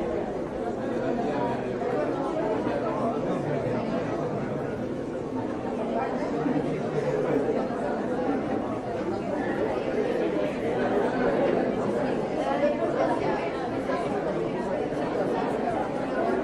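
Steady, indistinct chatter of shoppers' voices mixing into a background murmur, with no clear words.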